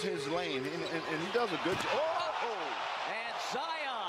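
Basketball game audio from a broadcast: sneakers squeaking in short rising-and-falling chirps on the hardwood court, with a ball bouncing and steady arena crowd noise underneath.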